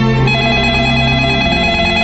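A cordless phone ringing with a warbling electronic trill over sustained background music chords. The ring comes in about a third of a second in.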